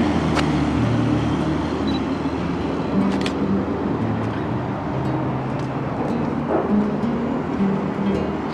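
Road traffic crossing the steel-girder bridge deck overhead: a steady rumble of engines and tyres with shifting low engine tones.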